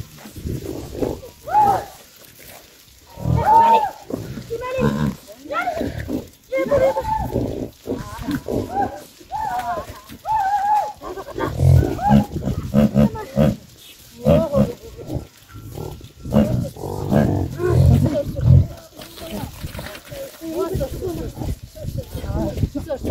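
A herd of yaks grunting in low, repeated bursts, mixed with people's short herding calls to the animals.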